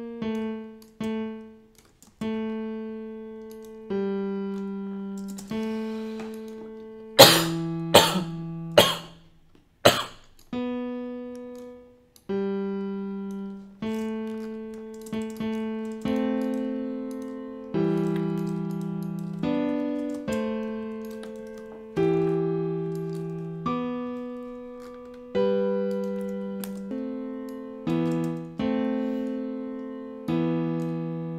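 FL Keys software piano playing single notes and then chords one at a time, each struck and left to ring and decay, as a dark drill chord progression is worked out. About a third of the way in, four sharp, loud hits come in quick succession.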